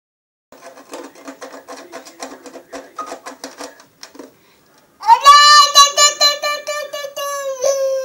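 A toy balalaika strummed quickly and evenly for about four seconds, then a toddler sings one loud, long, high note that drops slightly in pitch near the end.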